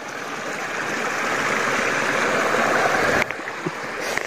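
Water rushing and splashing close by, swelling over about three seconds and then cutting off suddenly.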